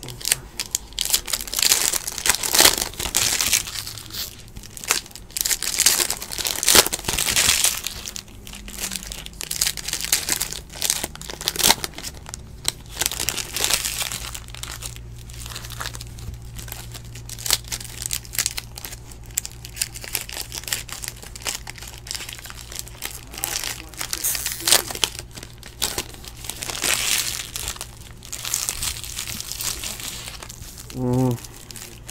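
Foil trading-card pack wrapper crinkling and tearing as it is worked open by hand, with cards handled between, in irregular bursts throughout.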